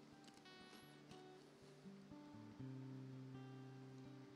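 Faint, slow acoustic guitar music with long held chords, moving to a new chord about two seconds in.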